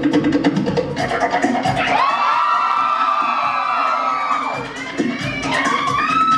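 Fast Tahitian drum music with rapid wooden slit-drum beats. About two seconds in, long high-pitched whooping cheers rise over it, twice.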